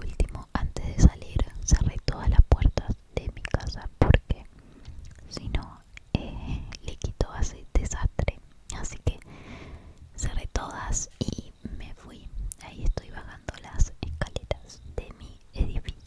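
Soft whispering, broken up by frequent small clicks and knocks from the phone being handled and moved.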